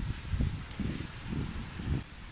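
Wind buffeting a handheld phone's microphone while walking outdoors: an uneven, gusty low rumble.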